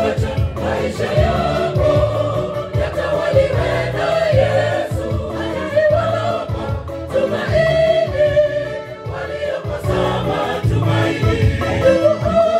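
Gospel choir singing live into handheld microphones, many voices together.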